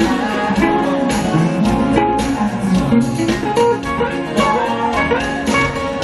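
Live jazz band with a hollow-body archtop electric guitar playing a quick run of single notes over electric bass and light percussion.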